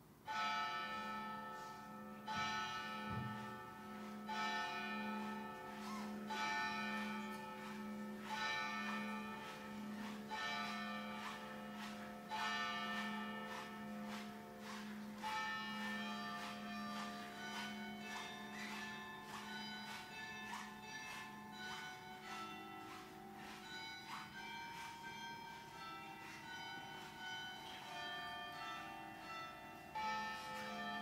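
Church bells ringing: a series of struck bell notes in changing pitches that ring on and overlap, about one every two seconds at first and coming closer together in the second half, over a low sustained hum.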